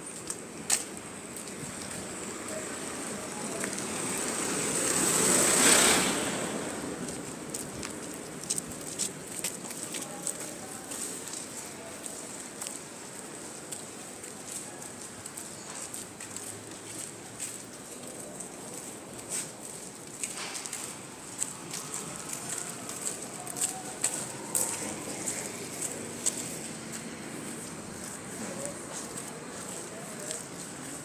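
Street ambience picked up by a handheld phone while walking, with scattered clicks of handling and footsteps and a faint steady high whine. A rushing noise swells over a few seconds to the loudest point about six seconds in, then falls away quickly.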